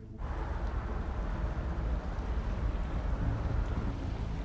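Steady low rumble of wind and a boat's engine out on open water, starting abruptly just after the start. A low engine hum becomes clearer near the end.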